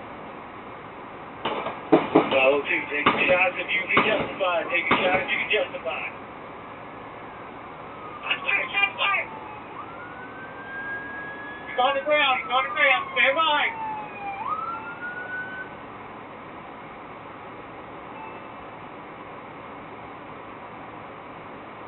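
Police siren wailing briefly about ten seconds in: its pitch rises, falls slowly, then rises again before stopping. Voices come in bursts before and during it, over a steady hiss.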